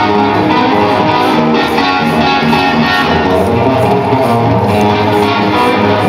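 Electric guitar solo played live over an arena PA, with held notes ringing over one another at a steady, loud level.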